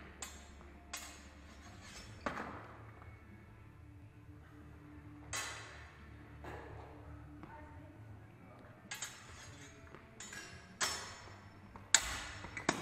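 Steel fencing sword blades clashing in sparring: a series of sharp metallic clinks with brief ringing, irregularly spaced and coming more often near the end.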